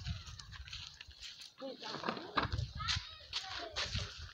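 Indistinct, broken-up human voices with no clear words, quieter than the dialogue around them, with a few short clicks.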